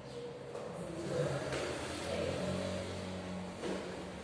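A motor vehicle's engine going by, a steady low hum that swells about a second in and fades near the end.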